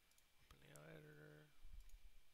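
Faint computer mouse clicks at a desk, with a brief hummed voice sound at a steady pitch in the middle and a soft low thump near the end.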